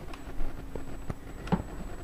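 Quiet pause: low room noise with a faint steady hum, a few soft clicks and one slightly sharper tick about one and a half seconds in.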